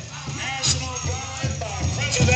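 Powwow drum group singing a veteran song: voices in high, gliding lines over spaced beats of a drum.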